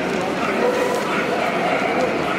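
A dog barking, with people talking in the background.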